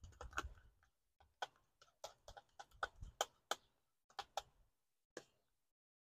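A spoon scraping and tapping against a small plastic cup as Greek yogurt is scooped out into a foil pan: faint, irregular clicks that stop about five seconds in.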